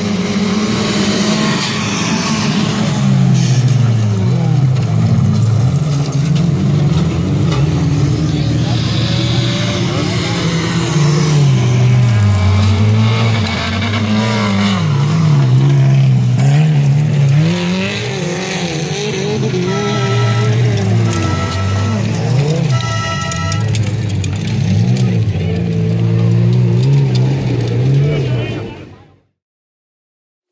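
Several stock car engines on a dirt track, revving up and down again and again as the cars accelerate, lift and pass close by.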